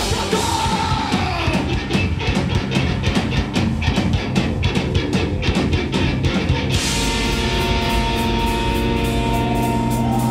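Live rock band playing loud and fast: a drum kit hit in rapid strokes under electric guitar and bass. About seven seconds in, a sustained ringing chord comes in over the drums.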